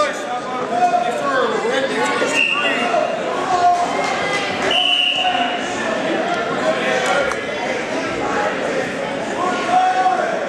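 Indistinct chatter of many voices echoing in a large gymnasium, with two brief high-pitched squeaks or tones, about two and a half and five seconds in.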